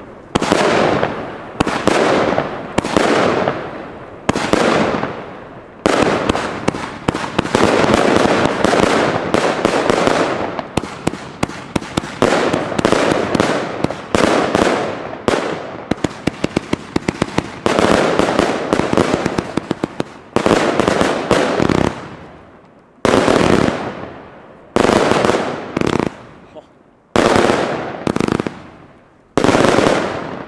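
Magnum Santa Domingo 200-shot firework battery firing: a long string of shots, each bang trailing off in a fading hiss of the bursting stars. About halfway through it fires a fast volley of many quick shots in a row, and towards the end the shots come singly with short gaps between them.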